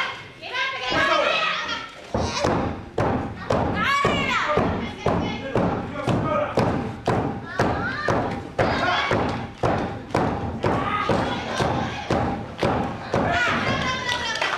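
A steady run of sharp thumps, about two a second, with shouting voices over them.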